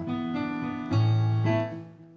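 Grand piano playing sustained chords as the introduction to the song: one chord held, then a fuller chord with a deep bass note about a second in that fades away near the end.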